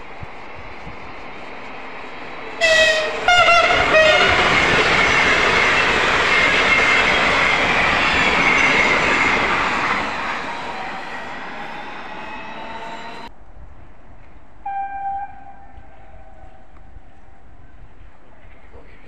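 A Sapsan (Siemens Velaro RUS) high-speed electric train sounds short horn blasts as it approaches, then rushes past at speed, its loud passing noise fading over several seconds. The sound cuts off suddenly, and a single short horn blast follows about a second and a half later.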